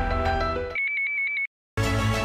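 TV programme theme music stops under a second in and gives way to a brief, high, trilling electronic tone. A split second of dead silence follows, then the theme music starts again near the end.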